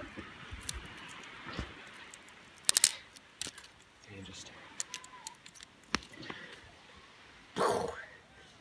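Small beach stones knocked together to strike sparks for a fire: a quick cluster of sharp clicks about three seconds in, and single clicks later on. A short, louder burst of noise comes near the end.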